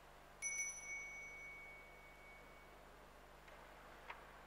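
Altar bell rung once: a short shake of a few quick strikes giving a bright, clear ringing tone that dies away over about two seconds.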